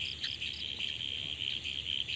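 Insect chorus, typical of crickets, trilling steadily at a high pitch with a regular pulsing.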